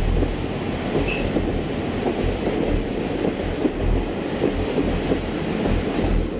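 Central of Georgia diesel locomotive and its passenger train passing: a steady rumble with irregular clicks from the wheels on the rails, and a brief high squeal about a second in.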